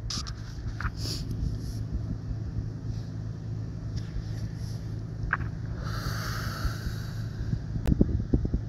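Steady low outdoor rumble with wind buffeting the phone's microphone; a hissing swell rises and fades near the end.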